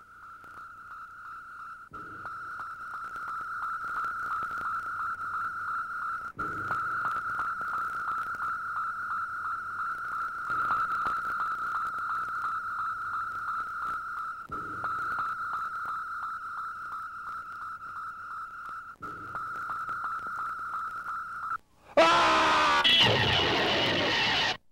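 Electronic sci-fi sound effect of the Martian war machine: a steady, high, fast-pulsing tone with a lower swell every four seconds or so. Near the end it cuts off and a sudden, much louder, harsh blast with wavering tones follows, like the heat ray firing.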